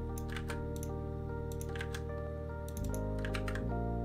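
Computer keyboard typing in a few short bursts of clicks, over soft background music of sustained chords that change about three seconds in.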